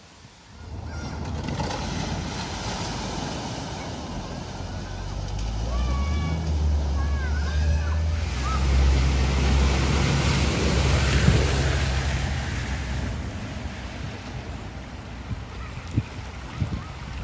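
Cars driving through a flooded ford: the wheels throw up spray and push through the water with a steady rush, and engines run low underneath. The rush builds from about a second in, is loudest around ten seconds in as two vehicles cross, then fades.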